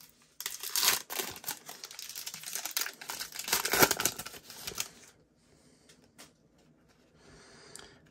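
Foil wrapper of a Panini Prizm football card pack crinkling and tearing as it is ripped open by hand, a dense crackle loudest about four seconds in that stops after about five seconds, leaving a few faint rustles.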